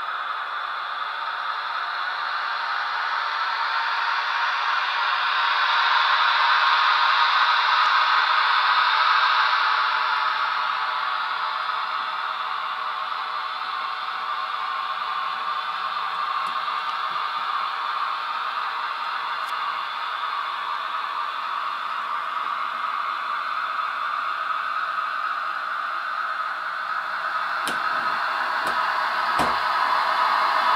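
HO-scale model of the SBB Ae 6/6 electric locomotive (Märklin 39365 / Trix 25666) running along the layout track: a steady hissing rolling and motor noise that swells louder and fades as it passes, with a few sharp clicks near the end.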